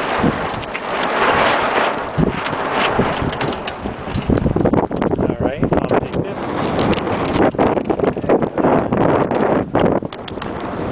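Wind buffeting the camera's microphone on a sailboat under sail, a rough noise that rises and falls in gusts.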